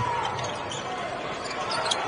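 Game sound of a televised college basketball game that cuts in abruptly: arena crowd noise with a basketball being dribbled on the hardwood court.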